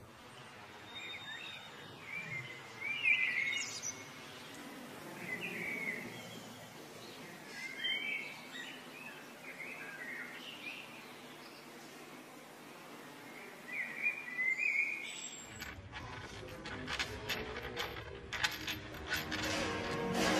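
Faint bird chirps, short and scattered, over a quiet background hiss. About three-quarters of the way through, a run of sharp clicks and a fuller, lower sound come in.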